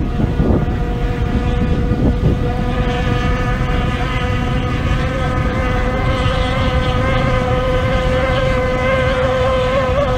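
Racing outboard hydroplanes' two-stroke engines running flat out in a steady high-pitched whine that edges up in pitch near the end. Wind rumbles on the microphone underneath.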